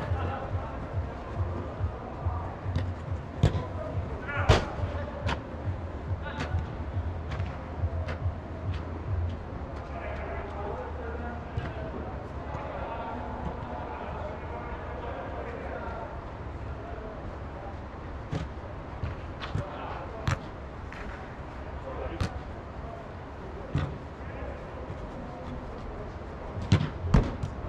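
Football being kicked on artificial turf inside an inflatable sports dome: scattered sharp thuds, a few seconds apart, over distant players' shouts and a steady low hum that drops somewhat about nine seconds in.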